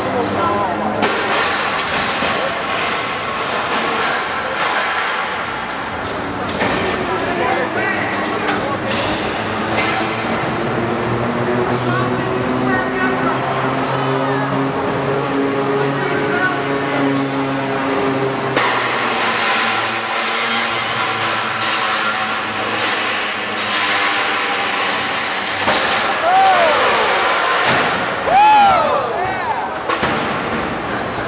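Busy arena sound of a combat-robot fight heard from the stands: crowd voices and shouts mixed with scattered knocks and clanks of metal impacts.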